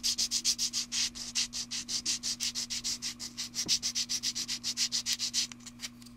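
Small plastic model-kit part rubbed back and forth on a sanding sponge block, a fast even scraping of about six strokes a second that stops shortly before the end.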